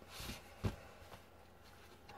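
Tarot cards being shuffled by hand: a short, faint rustle of cards, then a single tap about two-thirds of a second in.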